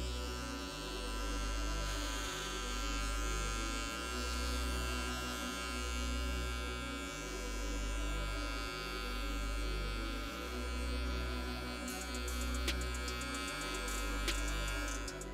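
Background music: a slow beat of deep held bass notes changing pitch about every second and a half, under sustained synth chords, with light ticks coming in near the end.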